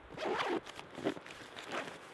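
Zip on the top lid compartment of a Lowepro Whistler BP 450 AW camera backpack being pulled open: one longer rasp near the start, then a few shorter ones.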